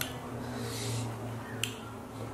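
A single short, sharp click about one and a half seconds in, over a low, steady hum.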